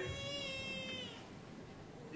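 A cat meowing: one long, drawn-out meow lasting just over a second, then fading.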